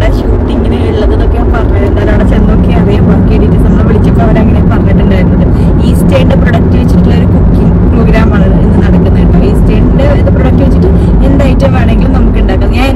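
Steady, loud rumble of a car in motion heard from inside the cabin, road and engine noise, with a person talking over it.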